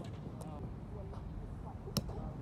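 Faint voices of players talking across the lawn, with a single sharp smack near the end as the Spikeball is struck.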